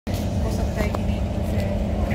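Kawasaki Heavy Industries C151 MRT train heard from inside a passenger car while running: a steady low rumble of wheels and traction motors with a few steady tones over it. Passengers chat faintly.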